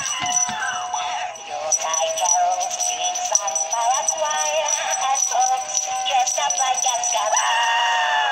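Gemmy Jingle Jangle baby goat animated plush singing a Christmas song with jingle bells through its small built-in speaker. The sound is thin and tinny, with no bass. The owner is unsure whether its voice is pitched low.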